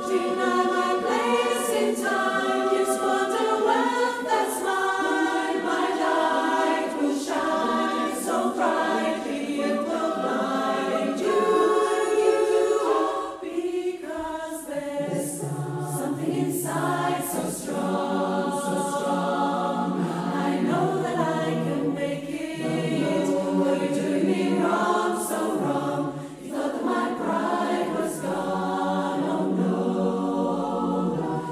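A choir singing a slow piece with long held notes, in phrases separated by brief pauses.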